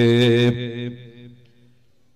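A man's voice chanting through a microphone and PA, holding one long note at a steady pitch that breaks off about half a second in. Its echo fades over the next second into a brief lull.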